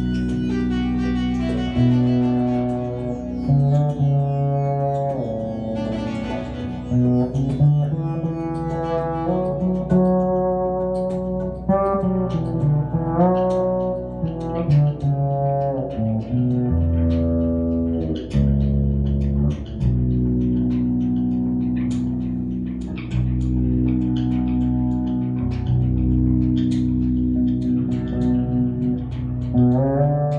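Electric bass guitar playing a waltz, held low notes under a melody that moves higher up the neck.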